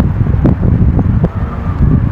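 Wind buffeting a phone microphone: a loud, gusty low rumble.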